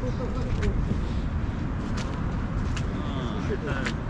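Background voices of people talking, not close to the microphone, over a steady low rumble, with a few sharp clicks about two seconds in, a little later, and near the end.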